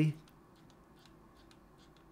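Faint, irregular clicks of a computer mouse, about half a dozen over a quiet room. The last word of speech trails off right at the start.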